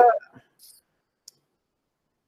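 A man's word trailing off, then a few faint small clicks and dead silence, as on a noise-gated video-call microphone.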